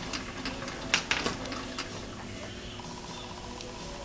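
Knurling wheels of a homemade straddle knurling tool biting into a mild steel workpiece on a hand-turned lathe: a few irregular light clicks and scrapes, the sharpest about a second in.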